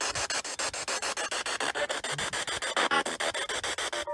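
Spirit box sweeping through radio frequencies: static chopped into rapid, even pulses, about nine a second. A brief pitched snatch of radio sound comes through about three seconds in.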